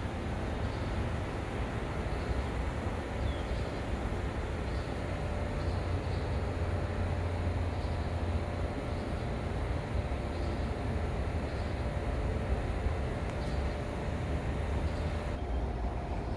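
Steady low rumble of outdoor background noise, even throughout with no distinct events.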